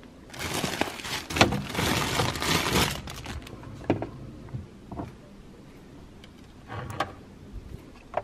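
Kitchen handling noises: rustling for the first few seconds, then scattered clicks and knocks as a container is taken off a fridge shelf and jars are handled on a spice rack.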